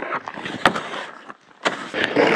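A snow brush sweeping wet snow off a car's side mirror and door, three short swishing strokes about half a second to a second apart.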